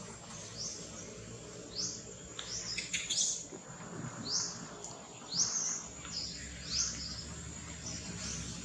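Bird chirping: a run of short, high, upward-sweeping chirps, roughly one or two a second, over a faint steady high-pitched tone.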